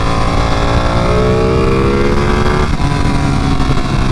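Ducati 959 Panigale's V-twin engine pulling under way, its pitch climbing slowly, then dropping about two and a half seconds in as the rider shifts up. Wind rush runs under it all.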